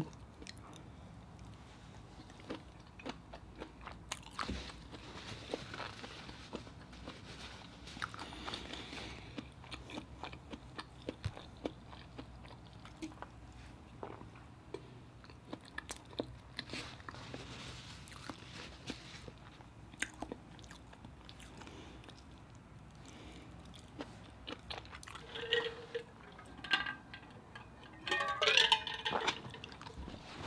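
Close-miked chewing and mouth sounds of someone eating seafood boil, with scattered short clicks and crunches as crab and shrimp are picked apart by hand. A few brief hums near the end.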